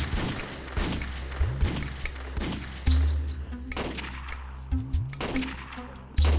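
Kalashnikov-type assault rifles firing a string of single shots at a target, about one to two a second at uneven intervals, over a low steady drone.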